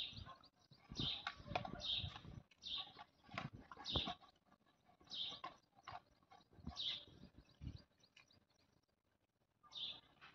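Hand floor pump being worked to inflate a soft bicycle tyre, strokes roughly once a second, each with a short rush of air, pausing near the end.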